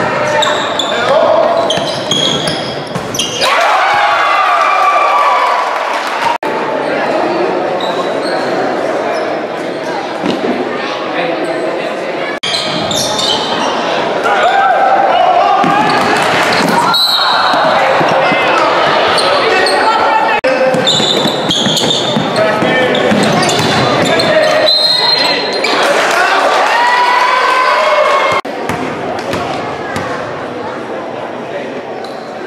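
Basketball bouncing on a hardwood gym floor during play, under a steady mix of spectators' and players' voices and shouts echoing in a large hall.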